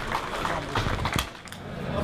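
Low background hall ambience with faint, indistinct voices and a couple of short, sharp knocks about a second in.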